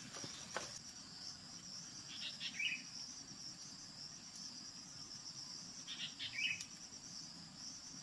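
High, steady insect trilling, probably crickets, with two brief bursts of chirps about two and six seconds in.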